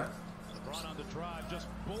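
Basketball game broadcast playing at low level: a TV commentator's voice over the sounds of play on the court.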